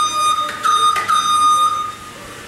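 Electric horn on a Yale walk-behind pallet stacker sounding a steady high-pitched buzz. It is pressed again a few times and cuts off near the end.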